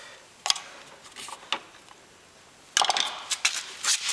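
Sharp clicks and clatter of a plastic lawnmower wheel and metal hand tools being handled: a few single knocks, then a burst of rattling near the end.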